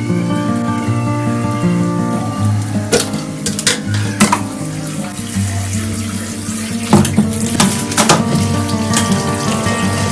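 Background music with slow held notes over water running from a kitchen tap into a stainless steel sink. Plastic food containers clatter as they are picked up and set down, in two clusters of knocks, about three and about seven seconds in.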